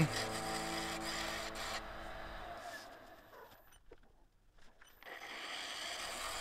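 Wood lathe running with a turning tool cutting the spinning laminated hardwood blank, a steady scraping hiss over the lathe's hum. It fades out a little past halfway into about a second of near silence, then resumes.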